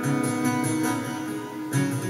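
Clavichord playing a run of struck chords, each note starting sharply, with low notes held underneath.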